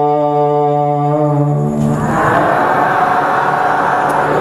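Buddhist chanting: one male voice holds a long chanted note, then about halfway through many voices join in, chanting together as a group.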